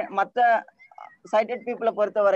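A screen reader's synthesized voice reading out text in short, quick bursts at an even, flat pitch.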